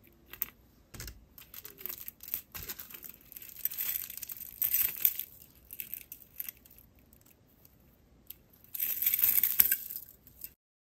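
Glass crystal bicones and green aventurine beads on gold-tone wire links clinking and rattling against each other as the beaded cluster necklace is handled, with scattered small clicks. There are two longer jingling stretches, one about four seconds in and one near the end.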